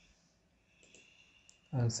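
A few faint clicks of a computer mouse, then a man's voice begins speaking near the end.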